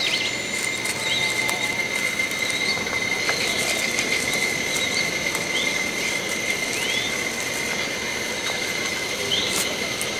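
Forest ambience: a steady, high-pitched insect drone with a few short bird chirps scattered through it.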